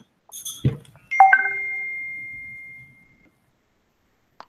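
A bright two-note chime: two quick struck notes about a second in, ringing on and fading away over about two seconds, just after a short soft knock.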